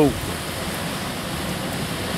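Steady, even rush of sea surf on a rocky shore.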